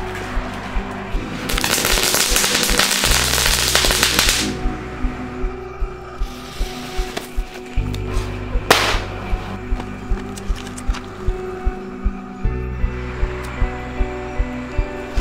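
Background music with a steady beat. About a second and a half in, a string of firecrackers goes off in a rapid crackle of pops for about three seconds, and a single sharp bang follows past the middle.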